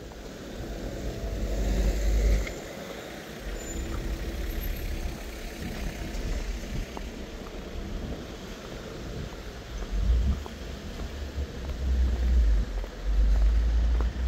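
Street traffic: a small van drives past close by at low speed, over a general noisy street background. A low rumble is strongest in the first couple of seconds and again in the last few seconds.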